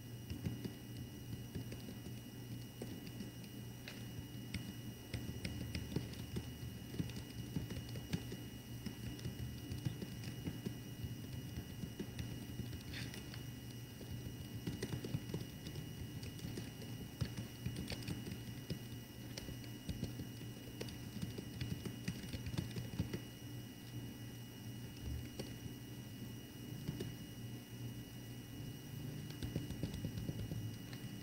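Light, irregular clicking of typing on a computer keyboard, over a steady low hum.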